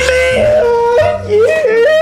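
A woman's high-pitched, drawn-out wailing cry in a few held notes that step up and down, with a short break about a second in: an alarmed or laughing shriek as milk is poured and spills.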